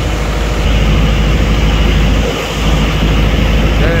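A boat's engine running steadily, a loud low drone under a rushing noise; the low drone dips briefly about halfway through.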